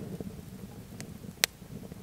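Two sharp snaps over a low steady rumble: a faint one about a second in and a louder one about a second and a half in.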